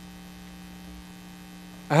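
Steady electrical mains hum from the audio system, with a lower rumble under it that drops away about a second in; a man's voice starts just at the end.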